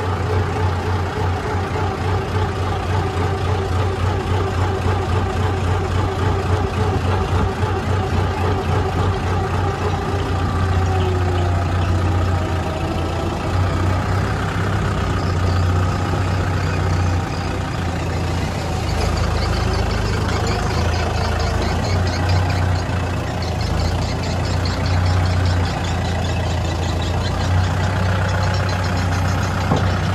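Kubota M6040SU tractor's four-cylinder diesel engine running steadily as the tractor is driven, its low note holding throughout with small shifts in engine speed.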